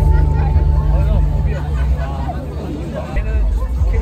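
Crowd babble: many people talking at once, over a steady low bass drone.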